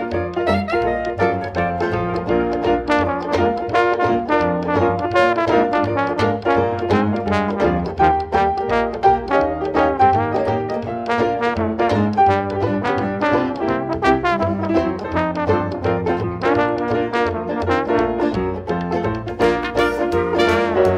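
Traditional jazz band playing a blues with trumpet, trombone and clarinet over banjo, piano, upright bass and drums, to a steady beat.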